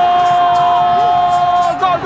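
A football commentator's long, held shout on one steady high pitch. Near the end it breaks into rapid repeated "gol" calls, about four a second, for a goal.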